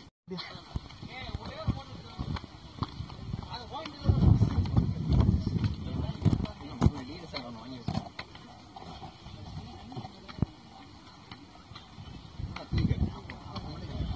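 Handheld recording of people walking on bare rock: scuffing footsteps and handling noise with low voices, and two stretches of low rumble, about four seconds in and again near the end.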